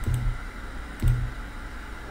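Two short clicks about a second apart, each with a brief low hum: clicks on the engraving software's jog controls and the Mecolour M10 laser engraver's stepper motors making short positioning moves to centre the laser head on the bottle.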